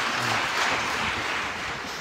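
Audience applause, a steady patter of clapping that fades away near the end.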